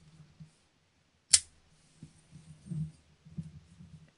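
A folding pocket knife's blade flicks open and locks with one sharp click about a second in, amid soft handling noise of a plastic-wrapped CD box.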